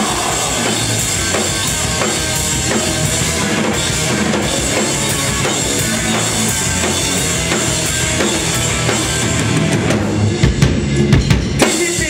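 A live rock band playing an instrumental passage with no vocals, the drum kit to the fore with bass drum and snare under guitars. Near the end, a run of hard, separate drum hits stands out.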